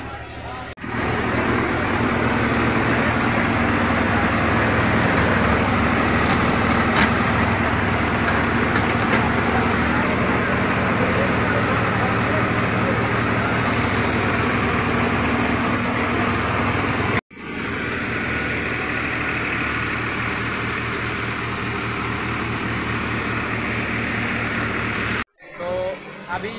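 Tractor-driven paddy huller (dhan machine) running steadily: the V-belt-driven hulling machine runs together with the tractor engine's steady drone. The sound cuts off suddenly twice, about two-thirds of the way in and again near the end.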